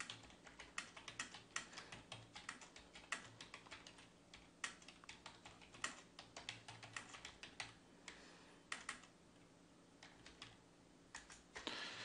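Faint computer keyboard typing: a quick run of key clicks, pausing for a couple of seconds near the end before a few more keystrokes.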